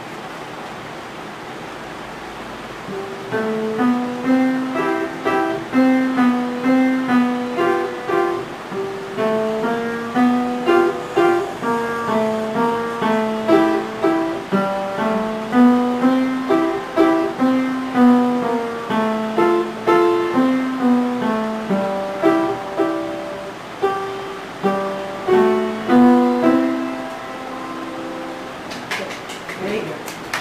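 Upright piano being played: a western classical piece, a steady stream of notes that starts about three seconds in and stops a second or two before the end.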